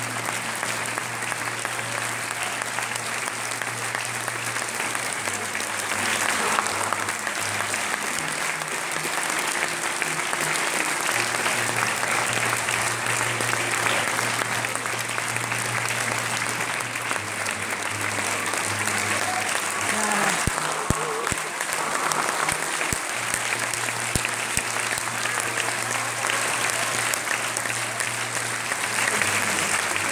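Theatre audience applauding steadily throughout.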